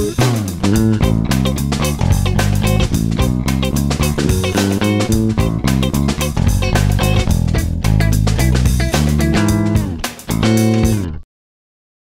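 A recorded band groove: a clean Telecaster-style electric guitar (a Nash Tele) over a bass guitar line and a drum loop. The music stops abruptly about a second before the end.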